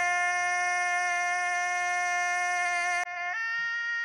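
A long, steady held tone rich in overtones, like a sustained musical note. It cuts off abruptly about three seconds in and gives way to a second held tone at a different pitch.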